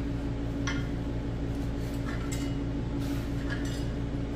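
A few light metal-on-metal clinks, spaced out, as a Ford 260 Windsor V8 is turned over by hand, over a steady low hum.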